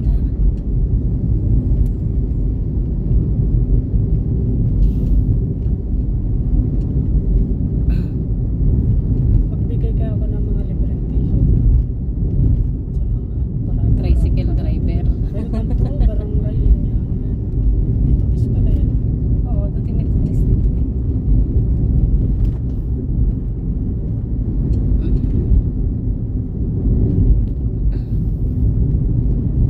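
Steady low rumble of a car's engine and tyres rolling on a concrete road, heard from inside the cabin.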